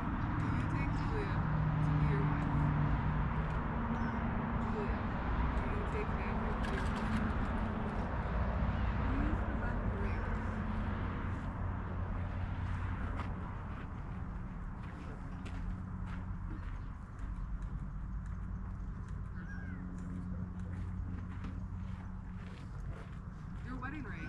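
Faint, indistinct voices over a steady low hum and background noise.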